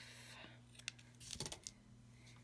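Small scissors snipping a strip of foam pop-up tape in half: a few faint, short snips and clicks around the middle.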